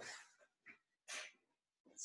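Near silence with a faint, short breath about a second in.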